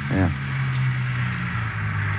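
A car engine running as a steady low drone, dipping slightly in pitch about one and a half seconds in; an old radio-drama sound effect.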